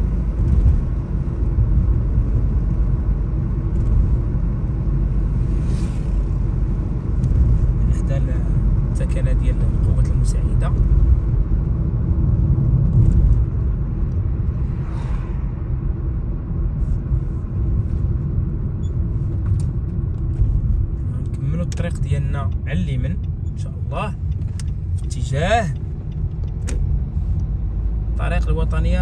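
Steady low rumble of a car driving along a road, engine and tyre noise, with a few short faint voice sounds near the end.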